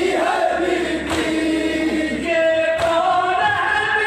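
Men reciting a nauha, a Shia mourning lament, into a microphone over loudspeakers, several voices chanting together in long held notes, with a sharp beat about every second and a half.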